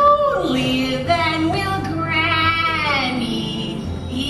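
A solo voice singing a line of a stage opera into a handheld microphone, over musical accompaniment. It moves through a few notes and holds long ones with vibrato, the longest from about two seconds in.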